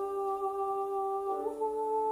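A woman humming the soprano part, holding one note, then stepping up to a higher held note about one and a half seconds in, with a slight waver on the second note.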